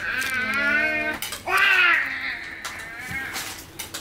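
A toddler crying in long, drawn-out wavering wails, about three of them, the last one weaker.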